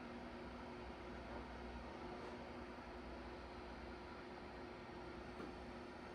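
Quiet room tone: a steady faint hiss with a low, even hum underneath.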